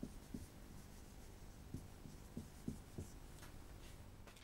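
Marker pen writing on a whiteboard: a run of faint short strokes and light taps against the board, several close together in the middle.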